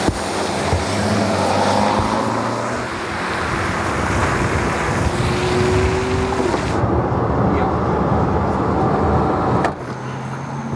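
Car engines running and tyres hissing on wet pavement as a car drives past. About two-thirds of the way through, the hiss thins to duller road and engine noise.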